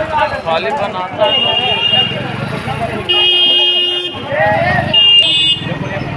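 Vehicle horns honking over the voices of a street crowd: a brief honk about a second in, a long steady honk of about a second from about three seconds in, and a short one near five seconds.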